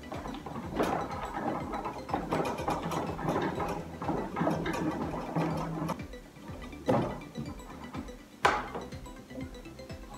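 Kitchen knife sawing and scraping through a pumpkin's hard rind in quick short strokes, over background music, then two sharp knocks near the end.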